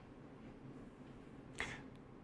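Quiet room tone, with one brief, sharp click about one and a half seconds in.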